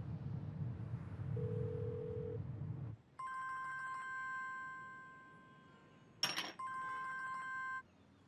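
A phone's ringback tone, a low steady beep of about a second, heard over a car's low cabin hum. After a cut, a mobile phone ringtone: a held electronic chord that rings, fades out, and rings again after a sharp click just past six seconds.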